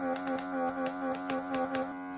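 Steady buzz of a handheld microdermabrasion pen's small motor, holding one pitch, with a run of quick light clicks over it.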